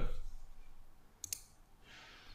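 A single computer mouse click, heard as two quick ticks close together (press and release), just past the middle against faint room hiss.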